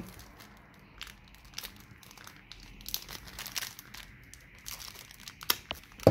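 Thin plastic wrapper crinkling as hands tear and crumple it open, in scattered irregular crackles, the sharpest about five and a half seconds in.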